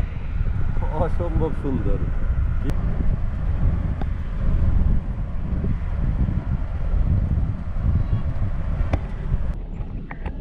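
Steady low rumble of engine and road noise inside a car driving along a highway, with a brief voice about a second in.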